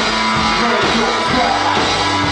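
Rock band playing live and loud, with an amplified electric bass guitar in the mix.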